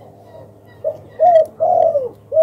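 Spotted dove cooing, a bird sold as a 'ba lỡ hai' cooer: a short note about a second in, then two longer arched coos close together.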